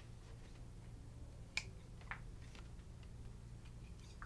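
Scissors snipping the corners of a black thermoplastic splint cuff: a few faint, sharp clicks, the clearest about one and a half seconds in and again half a second later, over a low steady hum.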